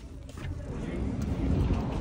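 Low rumble of street traffic, growing steadily louder.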